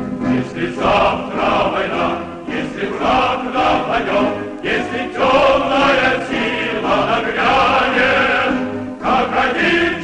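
Music: a choir singing a song, with sustained sung notes that shift every second or so.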